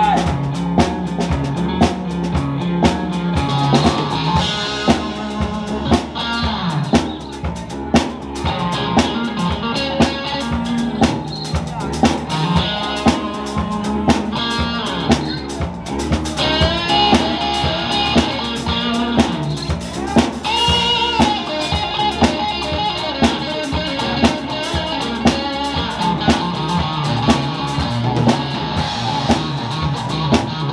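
Live rock band playing an instrumental passage: electric guitar over bass and a drum kit keeping a steady beat.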